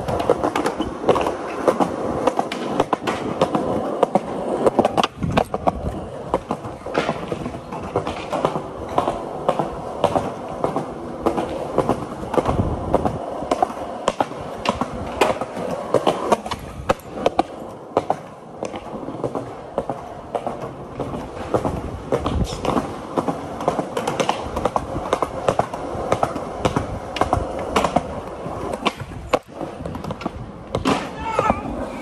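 Skateboard wheels rolling on a concrete walkway, a steady rumble broken by many sharp clacks of the board against the ground.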